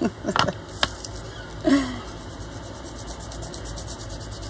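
Fingertips rubbing gold metallic wax over embossed black cardstock, a fast run of light, even brushing strokes from about halfway through. A single sharp knock comes about a second in, as the jar is set down.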